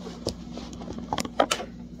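Handling noise from a handheld phone: several short clicks and knocks as fingers shift on the phone close to its microphone, the loudest about one and a half seconds in.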